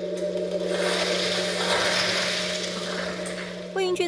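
A steady low drone under a rushing, hiss-like noise that swells in over the first second and fades away near the end.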